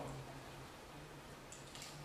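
Quiet room tone with a faint steady low hum and a few faint soft clicks near the end.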